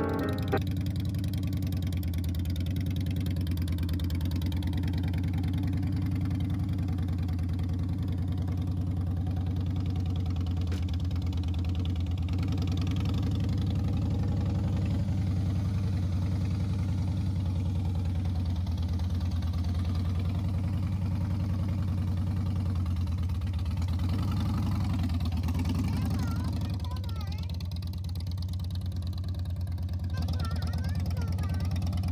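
Harley-Davidson motorcycle's V-twin engine idling, a steady, even low rumble that holds one pitch throughout.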